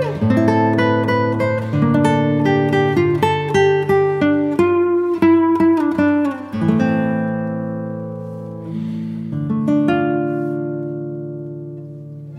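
Background music: acoustic guitar playing plucked notes, quick in the first half, then longer notes left to ring out.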